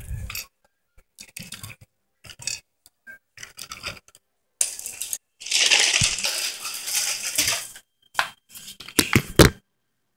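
A plastic toy car with toy figures inside being handled and pushed along by hand: scattered plastic clicks and knocks, then a dense clattering rattle from about halfway through to nearly eight seconds in as the car is moved fast, then a few more knocks.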